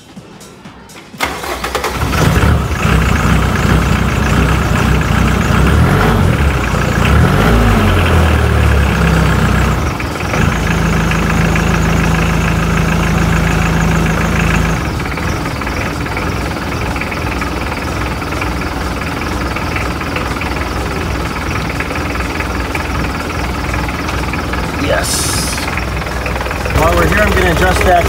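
A cold Mitsubishi Pajero diesel engine with a VE injection pump cranks briefly, catches about a second in, and runs. Its speed rises and falls for a few seconds, then it settles into a steady, low idle. It starts with a newly fitted fuel shutoff solenoid, after its fuel system was primed by hand.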